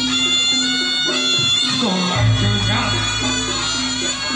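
Loud live folk music for a Javanese ganongan dance: a wind instrument plays a melody of long held notes that step up and down.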